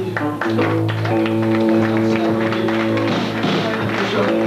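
Loud amplified electric guitars from a punk band playing live: a chord held and ringing, with short strummed strokes over it and a brief change of chord in the first second.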